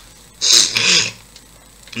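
A man sneezing once, a sharp, hissy burst of breath in two quick parts about half a second in.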